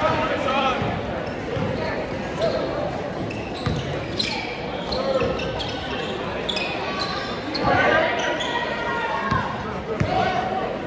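A basketball dribbled on a gym court floor, with repeated bounces over the voices of players and spectators in a large gym.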